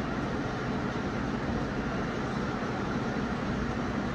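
Steady, even rumble and hiss of a film soundtrack's background ambience playing through a television's speakers, with no clear events.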